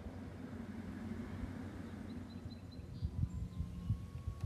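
A low steady outdoor rumble, with irregular dull thumps starting about three seconds in, like footsteps on the wooden planks of a pier.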